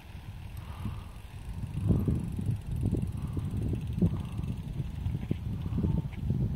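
Wind rumbling on the microphone in uneven gusts.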